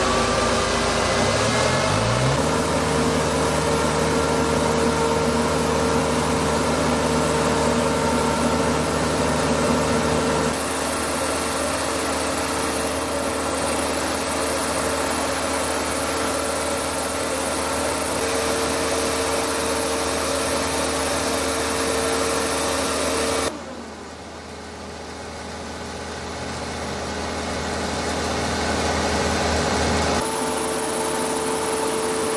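LUF 60 mist-blowing machine running, its engine-driven fan blowing a plume of water mist with a steady hum, rising in pitch over the first two seconds as it spins up. The sound changes abruptly about ten seconds in, then drops sharply past twenty seconds and swells back over the last few seconds.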